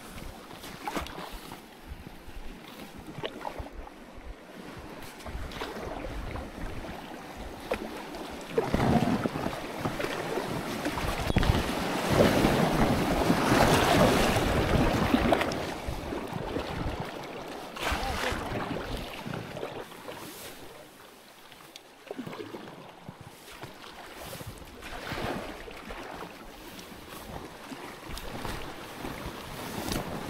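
Kayak paddle strokes splashing in a small stream, with water rushing around the boat. The rushing grows loudest for several seconds in the middle as the boat runs over rippling, faster current.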